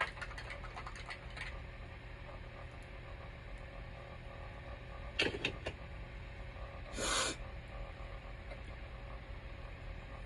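Light clicks and taps of small objects being handled: a few in the first second and a half and a quick cluster about five seconds in, then a short hiss about seven seconds in, over a steady low hum.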